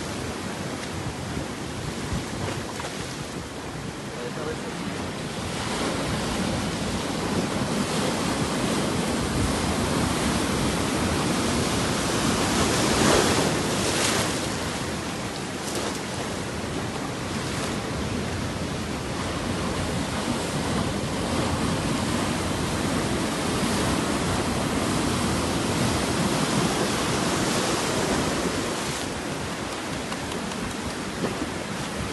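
Ocean surf breaking and washing over a rocky shore, a continuous rushing that swells and ebbs, loudest about halfway through.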